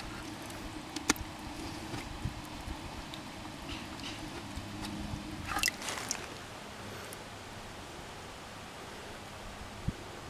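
Quiet sloshing and dripping of muddy water in a plastic bucket as a quartz crystal is rinsed by hand, with a few sharp clicks, a cluster of them about halfway through.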